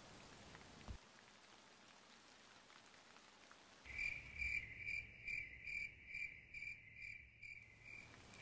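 Cricket-like insect chirping: a high chirp repeating about twice a second, setting in about four seconds in after near silence.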